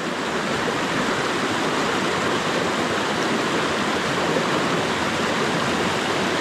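Small mountain stream rushing steadily over rocks through a whitewater cascade.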